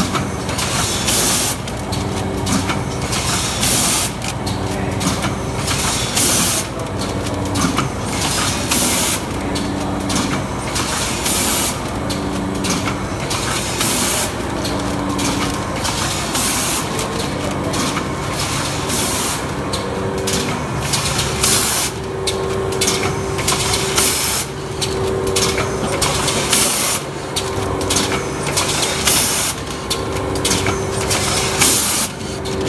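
Rotary premade-pouch packing machine running, its pneumatic cylinders letting out short hisses of air about once a second over a steady mechanical clatter and a hum that comes and goes.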